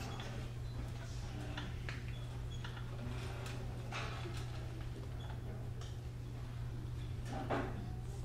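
Hushed hall ambience while an audience and a children's choir wait: a steady low hum under scattered small knocks, clicks and rustles, with a slightly louder shuffle near the end.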